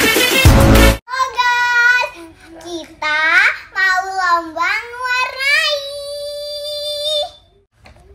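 Upbeat intro music that cuts off abruptly about a second in, followed by a young child's voice singing in a high sing-song that slides up and down and ends on a long held note.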